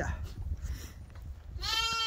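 A lamb bleating once near the end, a single high call, over the quiet background of a pen full of sheep.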